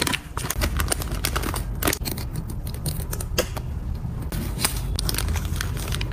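Clear cellophane bag crinkling and rustling as it is handled and small items are slid into it, with many irregular sharp crackles and ticks.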